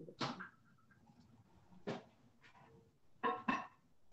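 Several light knocks and clicks of small objects handled on a table, about five in all, the last two close together near the end.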